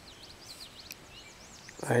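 Faint bird song: a quick run of high, arching chirps in the middle, over a quiet outdoor background, before a man's voice comes in near the end.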